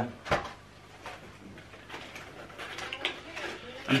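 Cardboard takeaway boxes being handled: a single knock about a third of a second in, then soft, irregular rustling and scraping of cardboard that gets busier toward the end as a small box is opened.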